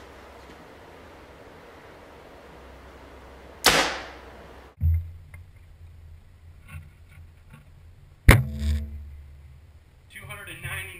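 A compound bow, a 2012 PSE Vendetta DC, shot once about four seconds in: a sharp crack from the string's release that dies away quickly. After a low hum comes in, a second sharp crack with a short ring follows near the end.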